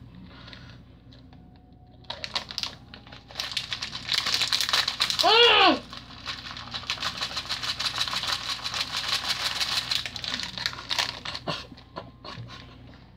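Skittles candies pouring out of a crinkly candy bag into a mouth: a dense, rapid clicking rattle with bag crinkle that runs from a few seconds in until near the end. About halfway through comes a short hummed vocal sound that rises and falls in pitch, the loudest moment.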